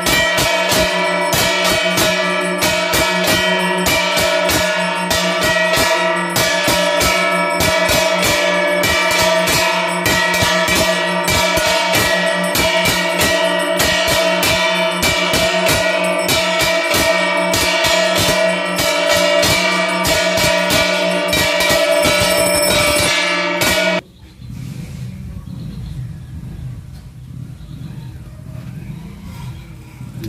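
Temple bells ringing for an aarti, struck in a fast, even rhythm over a sustained ringing tone. The ringing cuts off abruptly about 24 seconds in, leaving a quieter, low background sound.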